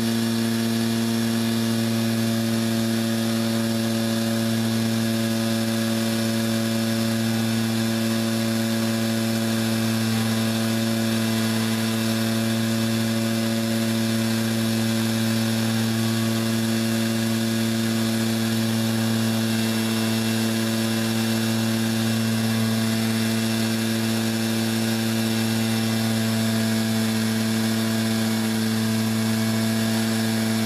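Electric palm sander running as a homemade paint shaker, vibrating two bottles of acrylic paint clamped in holders on top of it, with a steady, even hum.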